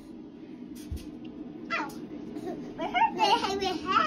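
A young child babbling and squealing without words, high-pitched and loudest in the last second, with a single knock about a second in.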